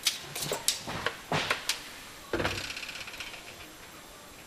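Plastic whole-house filter sump being handled and fitted up to its housing cap: a few light knocks and clicks, then a thump about two seconds in followed by a brief rattle that fades out.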